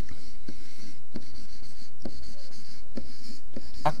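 A stylus writing by hand on a tablet surface: short scratchy strokes broken by light taps as the letters of a word are drawn.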